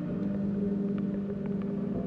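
Ambient background music: a held drone chord that shifts to a new chord at the start, with a few faint clicks.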